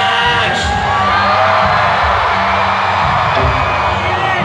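Loud live rock concert heard from the audience: amplified band music with a steady low drone, and the crowd cheering and whooping over it.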